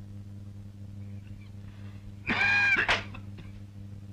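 A single short high-pitched call, about half a second long, arching up and then down in pitch, comes about two and a half seconds in and ends in a sharp click. It sits over a steady low hum from the old soundtrack.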